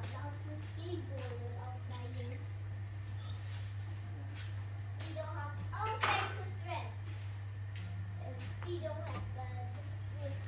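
Indistinct voices in the background, not the cook's narration, over a steady low hum, with a louder voice burst about six seconds in.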